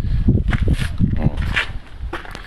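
A man's voice speaking indistinctly over a low rumble and footsteps on a concrete path.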